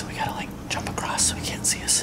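A man whispering close to the microphone, hushed speech with sharp hissing 's' sounds.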